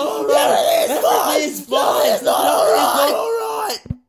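A dense wall of many overlapping voices singing and chanting at once, layered vocal takes piled on top of each other. It cuts off suddenly just before the end, with a short low thud at the cut.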